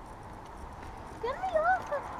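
A short, high warbling call that starts a little over a second in and wobbles up and down in pitch for under a second.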